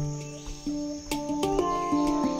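Background music of pitched melodic notes changing every few tenths of a second over light percussive clicks, layered with insect chirring as jungle ambience.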